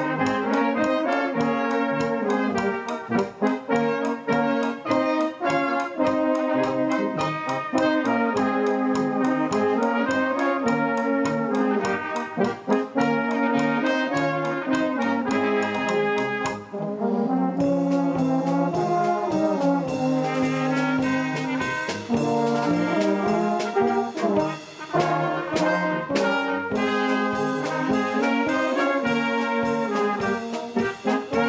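A Blaskapelle, a German-style village brass band, playing a tune: trumpets, tubas and baritone horns over a steady drum beat. The percussion turns brighter and hissier just past halfway.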